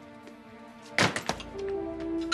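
A heavy thunk with a few quick knocks right after it, about halfway through, as suitcases are set down on the floor. Soft background music with long held notes follows.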